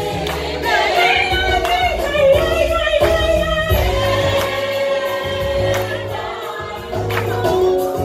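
Gospel choir singing with one lead voice standing out over the ensemble, holding a long note for about two seconds midway, over a low bass line.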